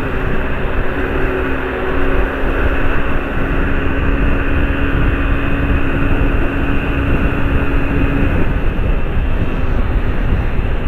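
Honda CG Fan 125 single-cylinder four-stroke engine running flat out at about 120 km/h, under heavy wind rush on the camera microphone. A steady engine note sits under the rush and fades about eight seconds in.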